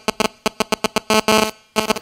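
A mobile phone ringing: a fast train of electronic beeps, about eight to ten a second, that breaks off briefly near the end and starts again.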